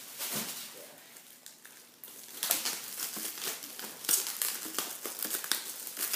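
Thin clear plastic disposable gloves crinkling as they are handled and pulled onto the hands, with dense crinkling from about two seconds in.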